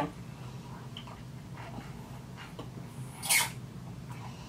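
A short, hissy slurp a little over three seconds in, as hot coffee is sucked up through a Tim Tam biscuit used as a straw, with a few faint small sounds before it over quiet room tone.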